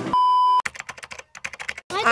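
A short, loud, steady electronic beep lasting about half a second and cutting off sharply, followed by a run of quick, irregular clicks like typing on a keyboard.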